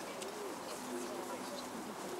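Low cooing calls of a pigeon, over quiet chatter of people.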